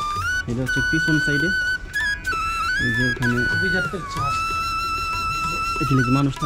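Background music: a melody of long held notes that glide from one pitch to the next, with a voice heard in short snatches over it.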